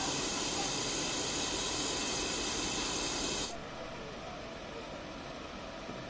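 Loud, steady hiss of pressurised gas escaping from an overturned tanker truck, its vented gas forming a white cloud. It cuts off suddenly about halfway through, leaving a quieter steady background noise.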